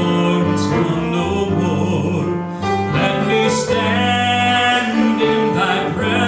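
Men singing a slow gospel song with piano accompaniment, holding long notes.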